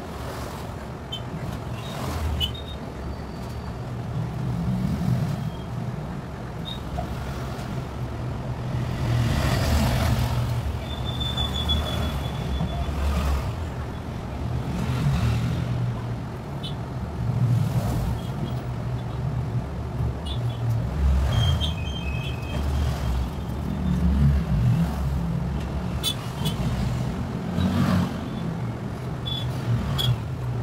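Low rumbling background noise that swells and fades, with a couple of brief faint high tones.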